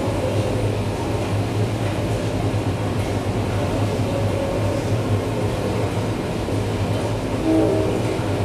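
Live electroacoustic improvisation of field recordings and processed radio over loudspeakers: a dense low drone with noise spread over it comes in suddenly at the start. A few short higher tones sound near the end.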